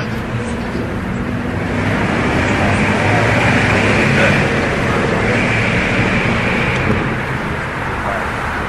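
Road traffic noise that swells over a few seconds and then eases off, as of a vehicle passing on the street.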